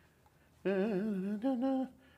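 A man humming two notes, starting about half a second in: a lower note that wavers slightly, then a short higher note.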